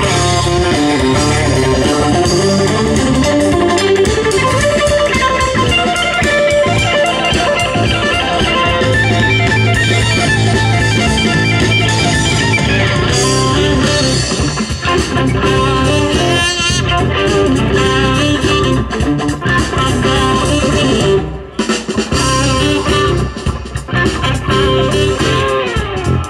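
Instrumental band music: electric guitar playing over bass guitar, with a short drop in the music about three-quarters of the way through.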